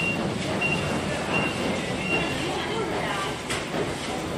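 Medical paper-plastic bag making machines running: a steady mechanical clatter and hum, with a short high-pitched tone repeating about every three-quarters of a second as the machine cycles.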